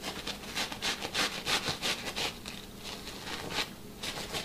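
Stiff scrub brush stroked quickly back and forth over wet, fleece-like sofa cushion fabric, about three strokes a second.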